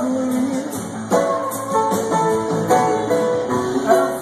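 Live rock band playing an instrumental passage: electric guitars and keyboard over drums with regular cymbal strokes.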